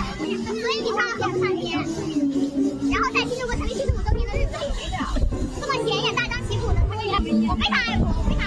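Several young people's voices talking over one another, with steady music playing underneath.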